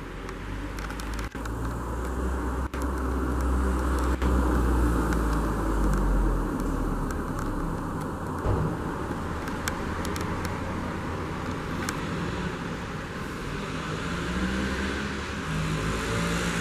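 A car engine running, a low pitched rumble that grows louder over the first five seconds or so and then eases off, swelling slightly again near the end.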